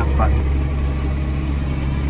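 Farm tractor engine heard from inside the cab, running at a steady drone while the tractor pulls a hay rake.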